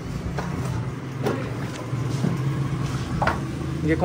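A steady low machine hum runs under a few light, sharp clicks, about three in four seconds, as halwa is scraped from a steel tray onto a plate.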